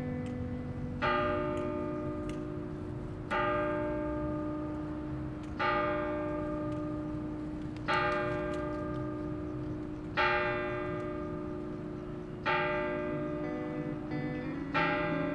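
Bells chiming slowly, a new ringing stroke about every two seconds, each left to ring on under the next.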